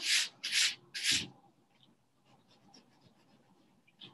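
Eraser rubbing across paper to erase a pencil line, three quick strokes in the first second and a half.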